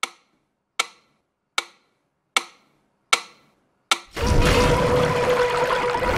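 Mechanical pendulum metronome ticking steadily, about four ticks every three seconds. It stands on a metal saucepan, so each tick rings briefly. About four seconds in, a loud rushing noise with a steady hum in it cuts in and lasts about two seconds.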